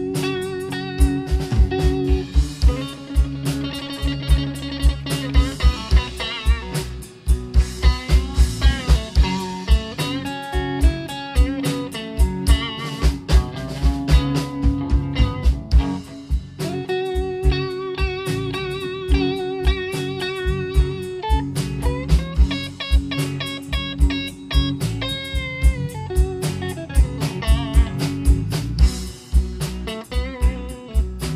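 Live blues band playing an instrumental: electric guitar lead lines with wavering, vibrato notes over bass guitar and a drum kit keeping a steady beat.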